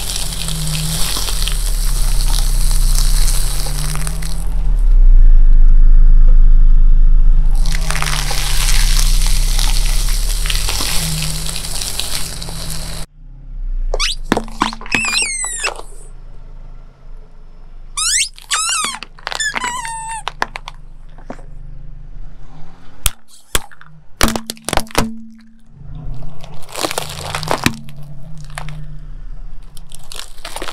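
A car tyre rolls slowly over foil-wrapped balls: long spells of crinkling and crackling over a low, steady engine hum. After a cut, rubber toys pressed under the tyre give several squeaks that bend up and down in pitch, then a few sharp snaps, and more crunching near the end.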